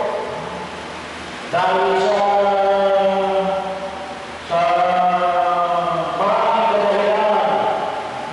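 A priest's voice chanting a liturgical prayer into a handheld microphone, in long sustained phrases on a nearly level pitch with short breaks between them.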